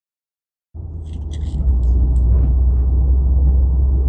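Steady low rumble of engine and road noise inside a Subaru WRX STI's cabin on the move, cutting in suddenly under a second in after silence.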